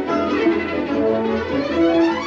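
Orchestral film score led by violins and strings, with a rising string run near the end.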